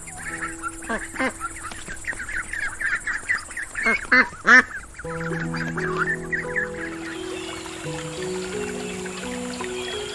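Ducks quacking in a rapid, busy run, loudest about four seconds in, over steady background music; the quacking stops about halfway through, leaving the music alone.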